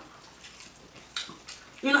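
Faint wet mouth sounds of eating food by hand, with two short sharp clicks a little past the middle; a voice starts near the end.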